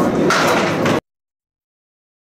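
A candlepin bowling ball rolling on the wooden lane and crashing into the thin pins and loose deadwood, a clatter of pins a fraction of a second in. The sound cuts off abruptly about a second in to dead silence.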